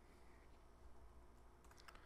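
A few faint computer keyboard keystrokes near the end, entering a value, over otherwise near-silent room tone.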